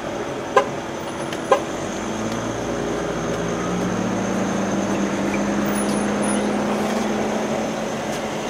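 A car running close by, a steady low hum that swells a little and then eases, with two short sharp sounds in the first two seconds.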